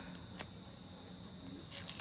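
Faint rustling of a plastic packing pouch being handled, with a couple of soft clicks early on and light crinkling near the end as the pouch is being opened.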